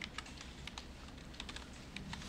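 Computer keyboard typing: a run of faint, irregular keystroke clicks.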